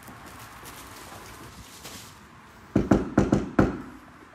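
Knuckles knocking on an apartment's front door: about five quick, sharp raps near the end, delivering a food order.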